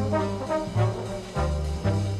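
Big-band jazz orchestra playing ensemble, with the brass section (trombones and trumpets) sounding accented chords over string bass and drums. The chords hit about every half second or so as the bass line moves.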